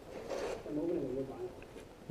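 A quiet, indistinct voice speaking a short phrase, with a breathy onset.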